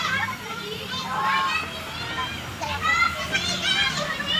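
A group of children shouting and chattering at play, with high voices calling out over one another in short bursts.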